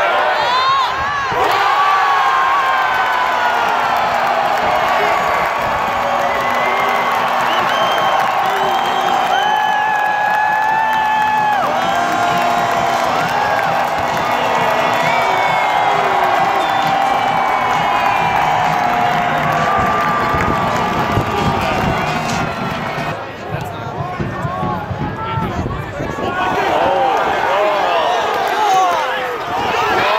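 Soccer stadium crowd cheering and chanting: many voices at once, some held like singing, over a steady roar. It stays loud, dipping briefly about three quarters of the way through.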